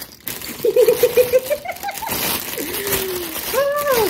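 A woman laughing in a quick run of short "ha" sounds about a second in, while a clear plastic bag crinkles as she handles it.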